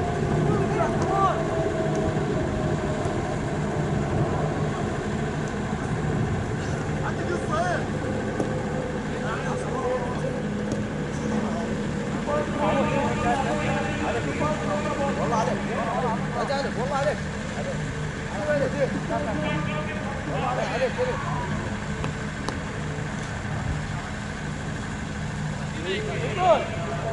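Open-field ambience: a steady low hum with distant, indistinct shouts and calls from players, and a tone that falls slowly in pitch during the first few seconds.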